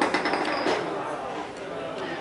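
A few sharp clicks of a metal skewer against chopsticks, just after the start and again about half a second later, as food is slid off the skewer, over a background murmur of voices.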